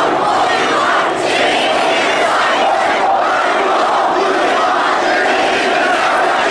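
A large marching crowd chanting slogans together: many voices shouting in unison, loud and unbroken.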